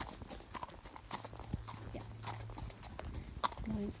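A horse's hooves striking a gravel road in an uneven clip-clop, heard close up from the saddle.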